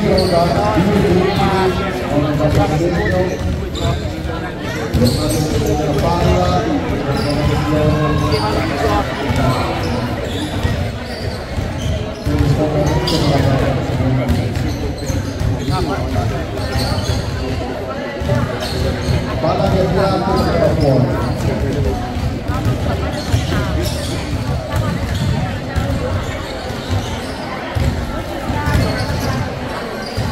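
Basketball bouncing on a wooden gym floor as it is dribbled, repeated thuds echoing in a large hall, with voices throughout.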